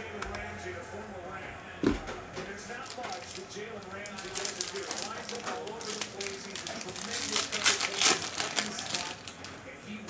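Foil wrapper of a 2021 Panini Prizm Baseball hobby pack being torn open and peeled back by hand, a run of crinkling crackles from about four seconds in. A single thump just before two seconds in.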